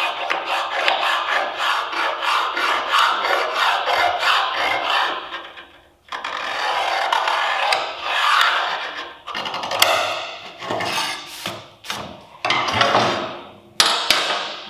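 A steel scriber scratching lines into 5 mm steel plate along a steel ruler: long scraping strokes with a short break about six seconds in, then shorter separate strokes near the end.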